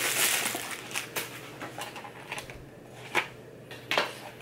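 Clear plastic bag crinkling as a small boxed watch is pulled out of it, then a few separate light clicks and taps as the cardboard box is handled.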